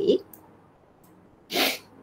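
A single short, sharp burst of breath noise from a person, about one and a half seconds in.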